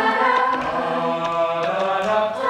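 A cappella vocal group singing held chords in close harmony, with a lead voice on a microphone.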